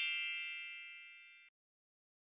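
A bright chime sound effect, a cluster of high ringing tones that fades away steadily and cuts off about one and a half seconds in.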